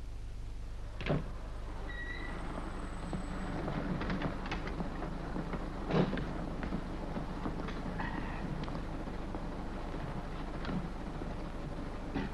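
A car at the kerb with clicks and rattles from its door handle and door, and a loud car-door thump about six seconds in, after a single knock about a second in. All of it sits over the old film soundtrack's steady hum.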